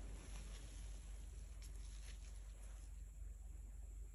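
Quiet room tone with a steady low hum, and a few faint soft scraping sounds as a thin stick is drawn through wet acrylic paint on a tile.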